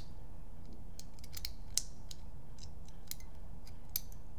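Small sharp metal clicks and taps of an Autococker paintball marker's cocking-lever cap and pin being fitted back together by hand, over a steady low hum. The loudest click comes a little under two seconds in, and another just before the end.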